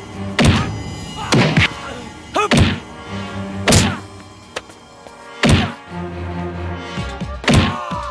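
Dubbed fight-scene punch and hit sound effects: a run of heavy thuds, some in quick pairs, about every second, over background music.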